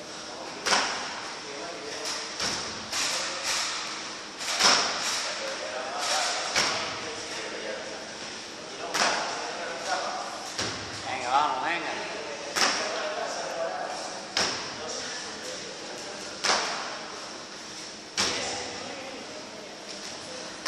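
Feet landing hard on a wooden plyo box and on the gym floor during repeated box jumps: a sharp thud about every one to two seconds, echoing in a large room.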